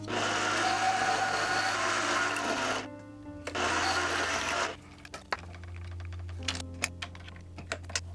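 Mini lathe running and turning aluminum stock, in two loud stretches, the second stopping about five seconds in. After that come a steady low hum and scattered sharp clicks of metal parts being handled, over background music.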